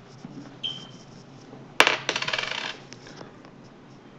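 A sharp knock followed by a quick rattling clatter lasting about half a second, like a small hard object dropped and bouncing on a desk. A short, faint high tone sounds about a second earlier.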